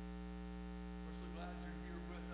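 Steady electrical mains hum from the sound system: a low, even buzz with a ladder of overtones and no other clear sound over it.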